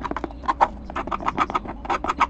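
Quick, irregular scratching strokes, about seven a second, of a small hand tool worked against a black plastic project box.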